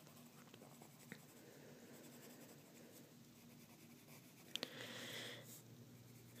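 Pencil scratching faintly on paper as it shades, with a louder stretch of strokes near the end.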